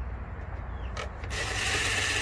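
DeWalt 20V cordless impact tool spinning a 10 mm socket on an extension to run down an engine valve cover bolt. It starts about a second in and then runs steadily.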